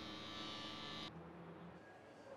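Steady low electrical hum with a buzzy edge that cuts off abruptly about a second in, leaving faint room tone.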